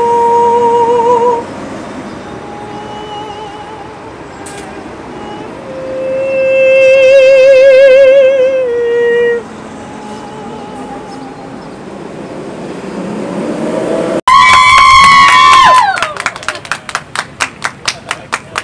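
A countertenor singing long, high, sustained notes with vibrato, building to a loud held top note near the end that slides down as it ends. A few people clap right after.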